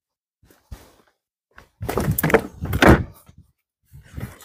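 Car door being opened: a few faint steps, then a cluster of clunks and knocks from the Alfa Romeo Giulia Quadrifoglio's driver door unlatching and swinging open, the loudest near the end.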